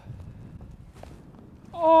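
Low wind rumble on the microphone, then near the end a man's loud, drawn-out, falling "Oh" as a putt narrowly misses the hole.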